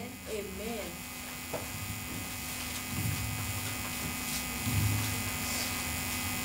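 A steady low electrical hum, mains hum picked up through the microphone and sound system, swelling briefly a couple of times. Faint voices are heard at the very start.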